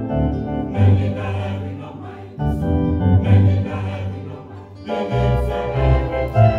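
Mixed church choir singing a gospel hymn together in phrases, accompanied by an electronic keyboard playing chords and low bass notes.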